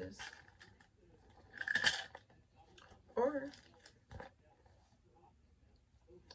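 A wallet being pushed into a purse pouch: scattered rustling and handling sounds, with a louder rustle about two seconds in. A short vocal sound follows about three seconds in, then a single click.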